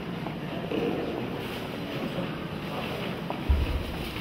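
Steady rushing noise of wind on the microphone, with a short low buffet of wind about three and a half seconds in.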